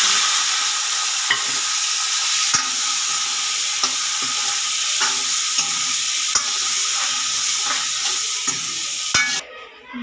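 Green peas sizzling in hot oil in a metal kadai, with a metal ladle stirring and clinking against the pan now and then. The sizzling cuts off abruptly near the end.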